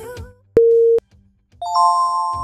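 Workout interval timer's countdown beep, a single steady tone about half a second long, after the background music drops out; then a bright multi-note chime rings near the end as the countdown runs out.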